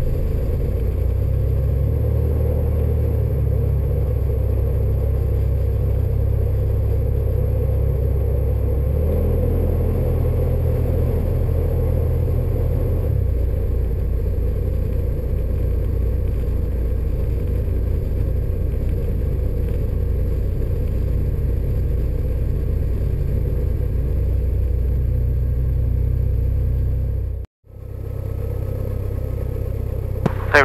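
Piston engine of a Robin light aircraft at low taxi power, heard inside the cabin as a steady low drone. Near the end the sound cuts out suddenly for a moment and comes back.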